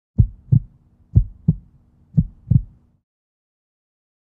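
Heartbeat sound: three double low thumps in a lub-dub rhythm, about one a second, stopping about three seconds in.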